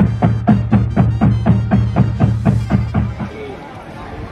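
High school marching drumline playing a steady beat, about four strokes a second with deep pitched drum tones, fading out about three seconds in.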